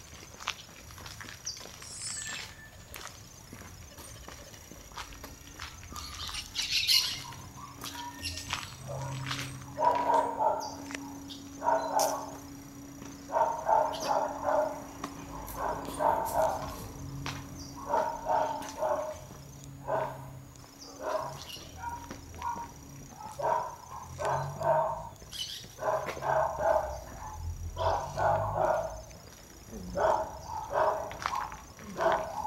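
A dog barking over and over, starting about a third of the way in, in short bursts a second or two apart, over footsteps on pavement.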